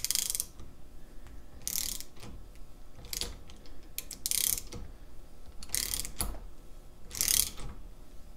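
Socket ratchet tightening the screw press of a nut splitter, clicking in short bursts about every second and a half as the handle is swung back, six times. Each turn drives the hardened steel wedge further in between the lock's plates.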